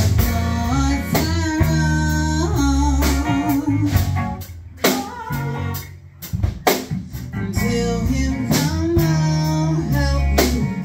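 A live band plays together: a woman sings long held notes with vibrato over a hollow-body electric guitar, a bass guitar and a drum kit. About halfway through, the band drops back to a few sparse hits for a couple of seconds, then comes back in full.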